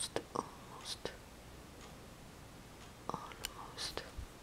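Quiet whispering and breathy mutters, with a few light clicks from fingernails working at a plastic powder compact, peeling off rubber-cement glue.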